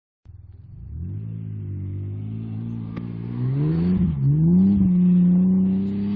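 Pickup truck engine revving hard while spinning donuts on dirt. The revs climb about three and a half seconds in, dip briefly, then climb again and hold high.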